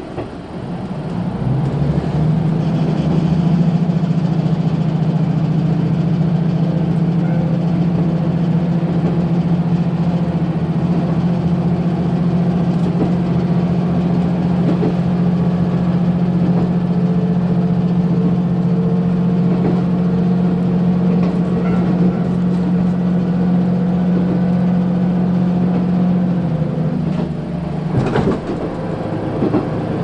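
Diesel engine of a KiHa 185 series railcar heard from inside the carriage. It comes up to power about a second in, then holds a steady drone while running. Near the end the drone falls away as the engine eases off, and a single sharp knock follows.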